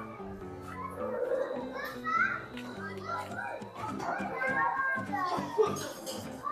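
Children's voices calling and chattering over background music with held notes.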